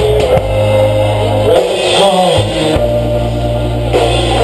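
Live rock band playing: electric guitars and bass guitar over a drum kit. About two seconds in, a low note slides down in pitch.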